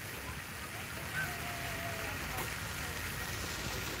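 Steady, even crunching noise of footsteps on a gravel garden path, with a faint thin tone from a distant voice briefly about a second in.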